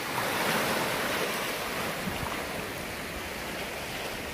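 Small sea waves washing and breaking over shoreline rocks: a steady surf, easing a little in the second half.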